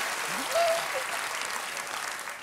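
Studio audience applause, thinning out near the end, with a short rising voice about half a second in.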